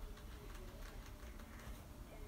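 Quiet room noise with a low rumble and a few faint, short ticks.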